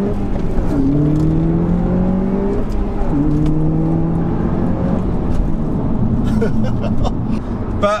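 Audi S1's turbocharged 2.0-litre four-cylinder engine under hard acceleration, heard from inside the cabin. The engine note climbs in pitch and drops at manual upshifts about one and three seconds in, climbing again after each. From about five seconds in it eases to a steadier note.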